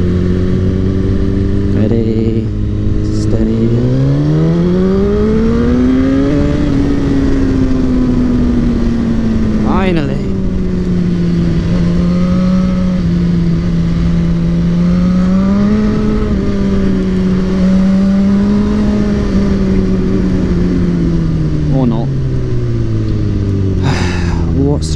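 Sport motorcycle engine heard from the rider's seat: low and steady at first, then revving up over about three seconds as the bike pulls away, settling into a steady cruise with small rises and falls, and dropping in pitch near the end as it slows.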